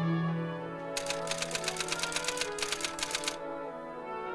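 Orchestral music with sustained brass-like tones. About a second in, a rapid run of sharp clicks like typewriter keys starts, roughly eight a second, and stops a little past three seconds.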